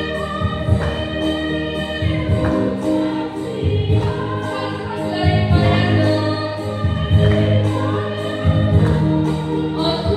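Women's choir singing a hymn together in unison through microphones and a PA, with voices holding long notes over a low accompaniment whose notes change every second or two.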